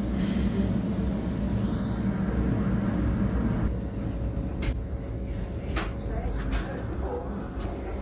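Electric narrow-gauge train running along the track, heard from its front end: a steady low rumble with a faint steady hum, and a few sharp clicks around the middle.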